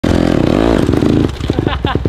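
Honda CRF150R dirt bike's four-stroke single-cylinder engine revving up and back down in the first second, then running lower with uneven pulses. A voice is heard over it.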